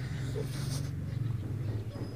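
A man chewing a mouthful of hand-fed rice and chicken gizzard, with a low steady closed-mouth hum and a small click as the food goes in at the start.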